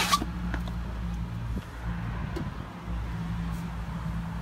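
Steady low motor hum, with a sharp knock right at the start.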